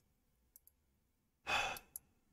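A man sighs: one short, breathy exhale about one and a half seconds in. It is followed at once by a sharp click, and faint clicks come earlier.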